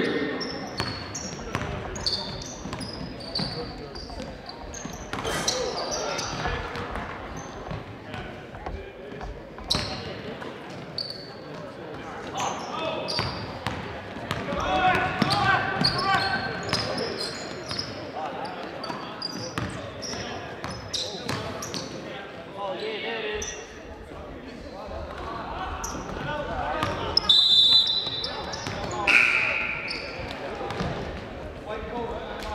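Live basketball game sounds echoing in a gym: a ball bouncing on the hardwood floor, short high squeaks, and players' and spectators' voices. Near the end there is a brief high whistle as play stops.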